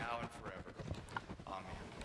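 A faint voice trailing off at the start, then quiet room tone with a few light knocks.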